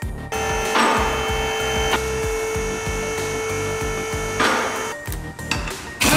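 Pneumatic impact wrench with a 19 mm socket running on a car wheel bolt: a steady high whine that starts just after the opening and stops about five seconds in, over background music.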